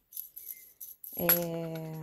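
Faint, light metallic clinks of small metal clay-extruder parts, a die disc and end cap, being handled during the first second; then a woman's drawn-out hesitant "é...".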